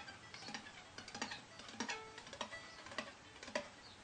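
Unbowed violin strings pinging softly as the fingers of the left hand tap down on them. The taps come in a quick irregular series, several a second, each a faint click with a short pitched ring.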